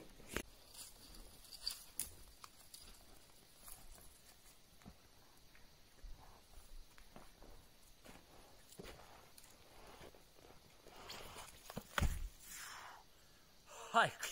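Faint scattered crunching of snowshoe steps in snow, then about twelve seconds in a louder rush ending in a heavy thump as a snowshoer jumps off a snow-covered boulder and lands in deep snow.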